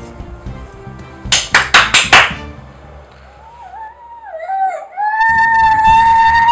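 Five quick, loud hand claps about a second in, then a young boy starts crying about three and a half seconds in, the cry turning louder and steadier near the end, over background music. The crying comes just after his cochlear implant has been switched on, as he takes in sound.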